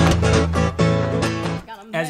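Acoustic guitar played bottleneck style with a metal slide in a fingerpicked delta blues, with a steady low bass under quick repeated plucked notes. The playing stops about one and a half seconds in.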